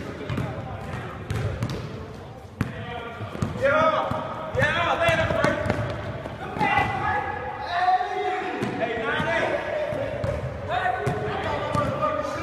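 A basketball bouncing repeatedly on the court during a pickup game, a string of sharp thuds, with people's voices talking and calling out over it from a few seconds in.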